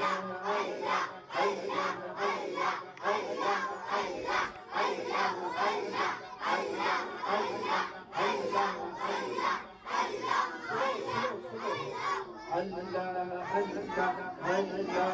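A crowd of boys and men chanting together in a steady rhythm, about two shouts a second, led by a man on a microphone.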